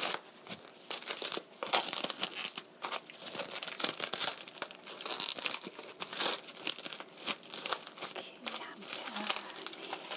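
Plastic cling film crinkling and tearing as it is pulled off a foam tray of button mushrooms, a rapid irregular crackle throughout.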